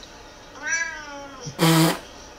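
A cat meowing twice: a drawn-out meow that rises and falls in pitch, then a louder, shorter, harsher meow near the end.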